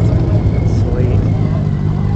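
An engine running at a steady idle: a low, even hum that holds without a break.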